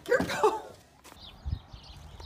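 A short yelp that bends in pitch, then a soft low thump about a second and a half in.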